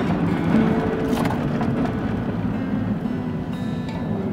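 Car interior noise while driving: a steady low rumble of engine and road.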